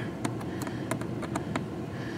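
A hand-held nut driver being turned to tighten a small nut or screw on the cabin air filter housing, giving a string of light, irregular clicks.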